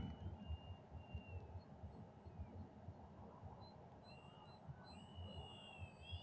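Near silence: faint outdoor room tone with a low rumble, and a few faint, short, high whistling chirps.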